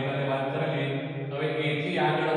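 A man's voice speaking in a slow, level, almost chanted monotone, holding one pitch with long drawn-out vowels.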